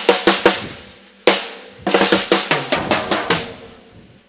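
Circa-1970 Ludwig Standard drum kit played with sticks in short bursts: a few quick strokes, a single hit about a second in, then a run of strokes from about two seconds in. The drums ring on with a steady tone and die away near the end.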